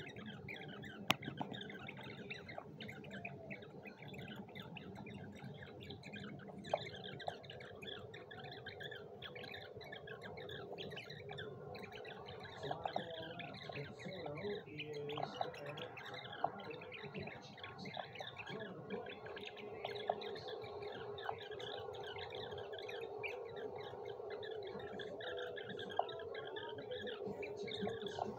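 A woman's speech played back in fast motion, sped up into rapid, high-pitched chattering with no words that can be made out, with a few sharp clicks scattered through it.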